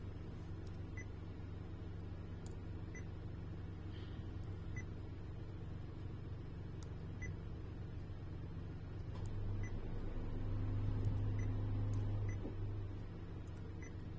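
Steady low hum with faint short beeps every second or two, typical of a car navigation touchscreen being tapped through its menus. The hum swells louder for about three seconds near the end.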